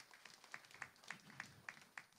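Weak, sparse applause from a small seated audience: a few people clapping, with single faint claps standing out about three or four times a second.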